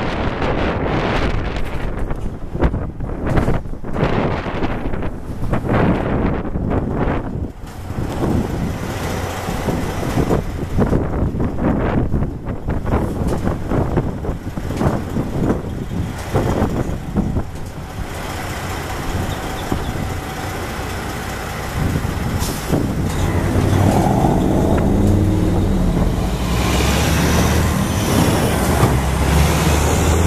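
Wind buffeting the microphone in gusts, then from about two-thirds of the way in a vehicle engine running close by, growing louder toward the end.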